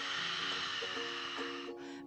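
A long, breathy exhale out of the mouth, an "ocean breath" hiss that fades away near the end, over soft background music with steady held notes.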